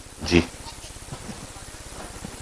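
A man speaks one short word, then steady low background hum of the room with no other distinct sound.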